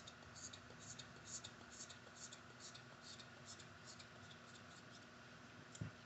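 Soft fluffy brush working over the camera lens as an ASMR trigger: faint, even swishes about twice a second that fade out about four seconds in.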